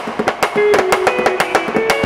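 Live band music: a drum kit played with quick, even strokes. About half a second in, a guitar joins, picking a melody of short stepping notes over the beat.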